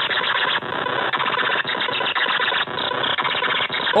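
Harsh, glitchy digital noise played by the Hydrogen computer virus's payload, its texture changing abruptly about every half second to a second.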